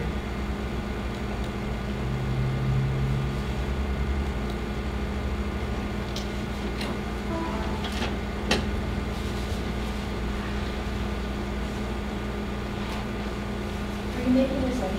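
Steady low room hum, with a few light clicks and taps from tools and paper being handled on a worktable. The sharpest tap comes about eight and a half seconds in.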